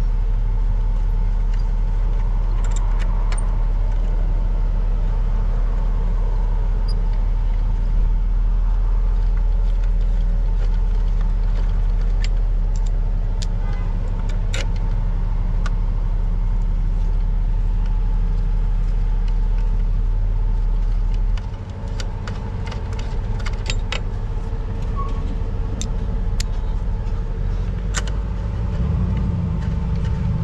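A steady low machine drone, like an engine or motor running, fills the background and changes about two-thirds of the way through. Over it come scattered small metallic clicks from main breaker lugs being handled and fitted into the breaker by hand.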